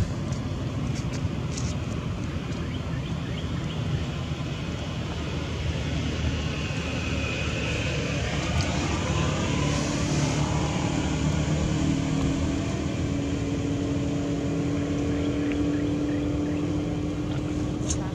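A steady engine drone, with a low hum that comes in about halfway through and rises slightly in pitch.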